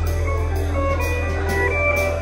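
Live band playing: single-note electric guitar lines over a held low bass note and drums with steady cymbal hits.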